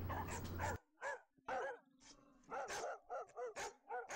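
A dog barking repeatedly, about ten short barks in an uneven run. A low steady hum stops abruptly about a second in, leaving the barks against silence.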